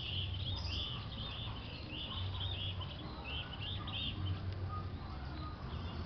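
Small birds chirping in quick repeated bursts through the first four seconds or so, over the steady rush of water flowing along a concrete irrigation channel, with an uneven low rumble underneath.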